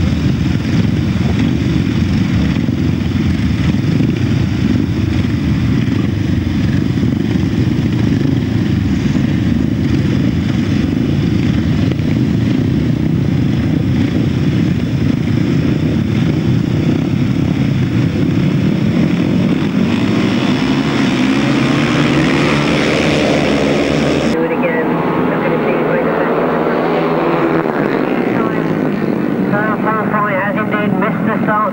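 Several grasstrack solo motorcycles running together at the start line, their engines revving higher towards the end. After an abrupt change, bikes are heard running at racing speed.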